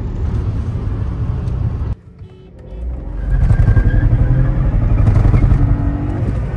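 Volkswagen 1.0 TSI three-cylinder turbo petrol engine and road noise heard inside the car's cabin at speed during a drag run. The sound breaks off sharply about two seconds in, then builds back up to a louder, steady engine drone under hard acceleration.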